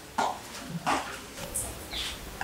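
A dog barking: two short barks less than a second apart.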